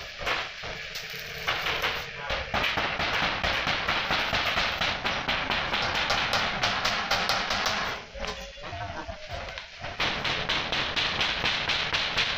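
Stick arc welding on a steel water-heater tank fitting: a steady crackling sizzle from the arc that breaks off about eight seconds in and starts again near the end. A few sharp hammer taps come before the arc starts.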